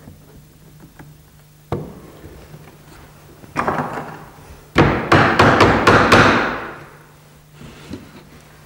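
A mallet knocking the glued top rail of a wooden chair back down onto its legs and slats during reassembly: one knock about two seconds in, then a quick run of about six sharp strikes near the middle.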